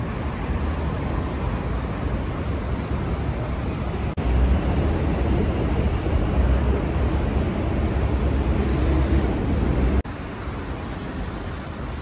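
Steady outdoor city street noise with distant traffic and a heavy low rumble. It gets suddenly louder about four seconds in and drops back just as suddenly about ten seconds in.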